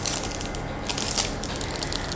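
Small clear plastic bag of mounting screws and wall plugs being handled and crinkled, with scattered light clicks.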